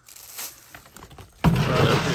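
Thrown deer feed pellets pattering faintly onto dry leaves and dirt, then, about a second and a half in, a sudden loud rustling scrape.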